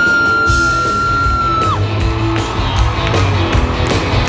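Live country band music played loud through the venue's sound system, with a long, high "woo" yell from a fan close by that is held for about the first two seconds and then falls away.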